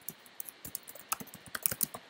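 Typing on a computer keyboard: a run of quick key clicks, coming thicker and louder in the second half.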